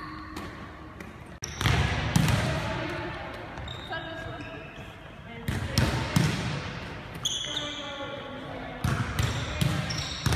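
Volleyballs smacking off players' forearms and hands and bouncing on a hardwood gym floor: several sharp hits, each ringing on in the large hall's echo, with indistinct voices between them.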